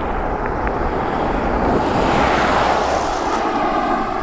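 A car passing by on the road: tyre and engine noise swelling to its loudest about halfway, then fading away with a falling pitch.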